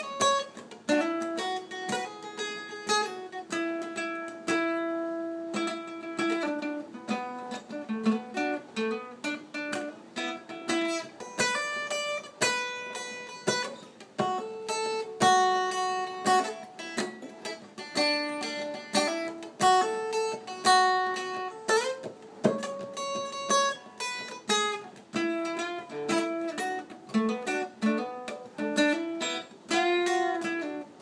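Steel-string acoustic guitar played solo and fingerpicked, a continuous run of plucked notes and chords ringing together.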